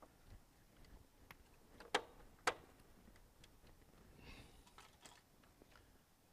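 Small metallic clicks and ticks of a screwdriver working the terminal screw of a Square D QO breaker, with two sharper clicks about half a second apart.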